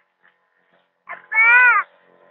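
A cat meowing once, a drawn-out call about half a second long that rises and then falls in pitch, about a second and a half in.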